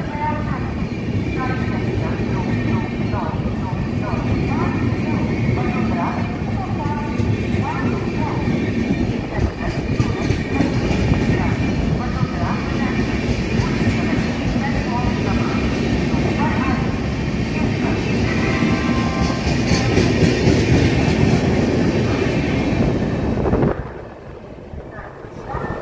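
Double-decker coaches of the 12931 AC Double Decker Express running past on the rails, a loud steady rumble of wheels and running gear with some clickety-clack. It drops off sharply near the end as the last coach clears.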